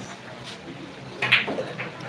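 Pool balls clacking as a shot is played: one sharp click about a second and a half in, over a faint crowd murmur.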